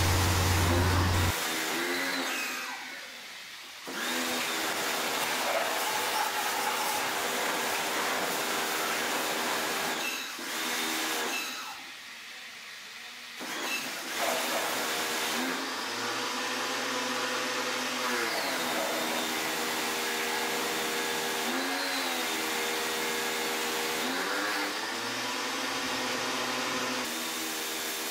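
CPT 120-bar pressure washer running: a steady motor whine under the hiss of the water jet spraying a motorcycle. It cuts out twice for a second or two and starts again, and its pitch dips briefly a few times later on.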